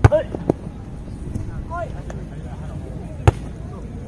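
Volleyball struck by hand: a sharp, loud slap right at the start as the ball is spiked, another lighter hit about half a second in, and a second sharp slap about three seconds in as the ball is played up again. Short shouts from players come between the hits.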